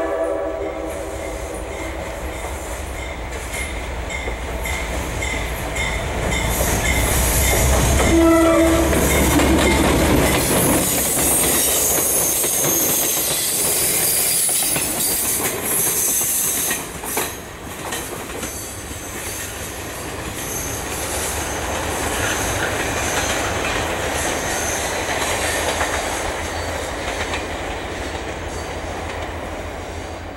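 Diesel-hauled passenger train passing close by. The horn cuts off at the start, and the locomotive's engine rumble builds and passes around eight to ten seconds in. Then the cars' wheels clatter and hiss over the rails, easing off toward the end.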